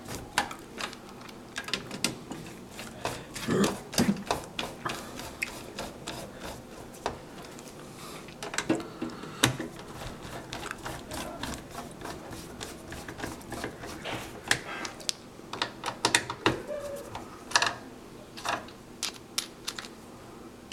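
Irregular metallic clicks and rattles of a screwdriver and parts knocking against a steel PC case as it is reassembled, with a cough about four seconds in.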